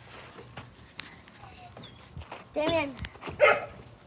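Fleece clothing rubbing and rustling against the phone's microphone, with small clicks. Two short, loud cries come close together near the end: a pitched call, then a harsher burst.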